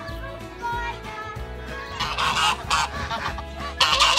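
Geese honking. A few short calls at first, then from about halfway in a run of loud, harsh honks that grows loudest near the end.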